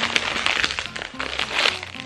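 A foil-lined plastic Cheetos snack bag crinkling and crackling as it is pulled open and handled, over background music.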